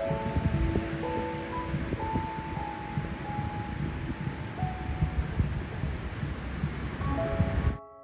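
Beach wind buffeting the microphone with the wash of surf, heard under piano music. The wind and surf cut off abruptly near the end, leaving only the piano.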